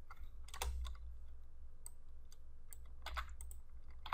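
Computer keyboard typing: a scattering of irregular, fairly light keystrokes over a faint low steady hum.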